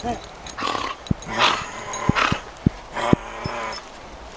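A dog right at the microphone making breathy huffs and snuffles, with several short sharp knocks in the second half.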